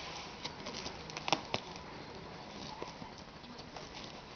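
Faint handling noise of a plush toy's battery pack being pushed about in its fabric back pouch: soft rustling with a few light clicks, the sharpest two close together about a second and a half in.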